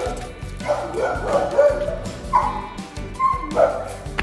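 A dog barking and yelping in a string of short calls, with a louder pair near the end, over background music.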